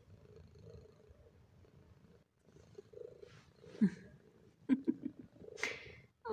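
Domestic cat purring close to the microphone, a low, even rumble. A few short, sharper sounds break in during the second half.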